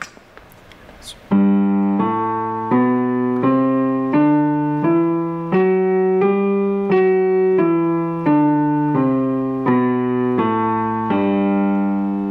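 G major scale played on a piano keyboard with both hands an octave apart: fifteen evenly paced notes, about three every two seconds, climbing one octave and coming back down, starting about a second in.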